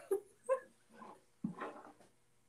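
Stifled laughter in four short bursts, the last one the longest.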